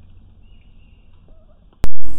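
Faint outdoor pond ambience with a couple of faint short chirps, then near the end a single sharp, loud click where the audio cuts to a new recording.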